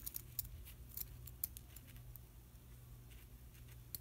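Scissors snipping through wire-edged burlap ribbon, cutting a tail into its end: a few faint, crisp snips, mostly in the first half.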